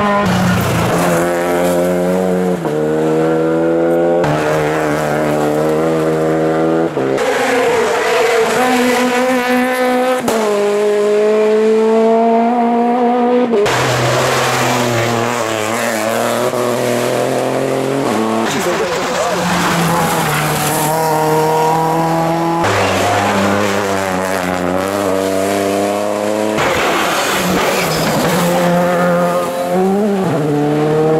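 Rally car engines revving hard, the pitch climbing and then stepping abruptly at each gear change as the cars come down the stage and through a tight corner.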